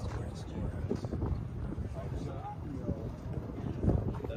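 Indistinct background chatter of people talking, with wind rumbling on the microphone.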